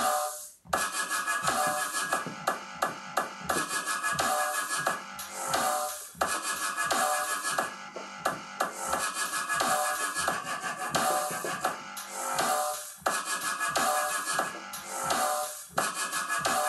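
Electronic beat played live on a tablet launchpad app (Drum Pads 24): looped sounds and drum hits triggered by tapping the pads, with a short drop-out about half a second in and brief breaks around six and thirteen seconds.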